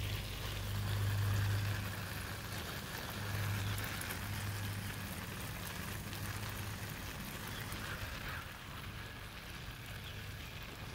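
Water from a garden sprinkler pattering steadily on leaves, grass and soil, like rain, over a low steady hum that swells and fades.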